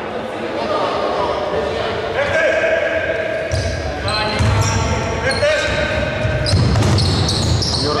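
Basketball game sounds on an indoor court: a ball bounced on the floor and sneakers squeaking as the players move, echoing in a large hall.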